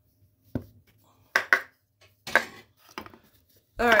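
A handful of sharp knocks of a spoon against a plastic mixing bowl while flour is added, two of them in quick succession about a second and a half in.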